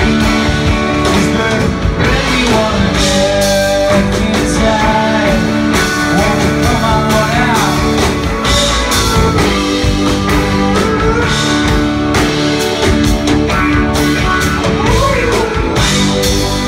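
Live rock band playing an instrumental passage on electric guitars, keyboard, bass and drums, with a lead line that slides and bends in pitch over the steady band.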